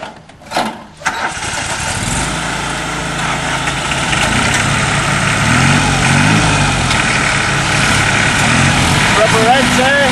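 Lawn mower engine starting: two short bursts, then it catches about a second in and runs steadily, getting a little louder, its pitch wavering.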